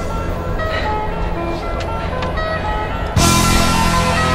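Background music of held, steady notes over a low bed. A little after three seconds in it turns suddenly louder and fuller, going into a heavy rock section.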